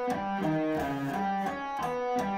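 Clean-toned electric guitar playing a slow sweep-picking drill: single notes one after another, about four a second, stepping up and down across the three lowest strings with a 1-2-3 fretting pattern, one note sounding at a time.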